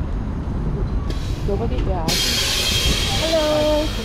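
A heavy vehicle's air brakes releasing air: a loud, even hiss that starts suddenly about two seconds in and cuts off just before the end, over steady street traffic rumble.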